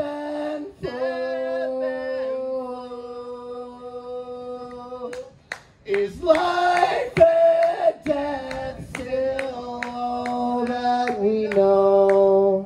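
A man singing long held notes into a microphone over an acoustic guitar. One note is held for about four seconds, then after a short break near the middle a second phrase of sung notes follows, with sharp strums in between.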